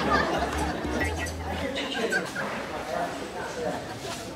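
Indistinct human voice sounds, mumbling or chatter with no clear words, fading somewhat towards the end.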